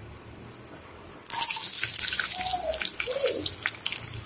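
Chopped shallots dropped into hot oil with spluttering mustard seeds, setting off a loud sizzle about a second in that eases off toward the end.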